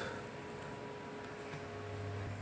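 Quiet room tone: a low, even hiss with a faint held tone under it and no distinct knocks or scrapes.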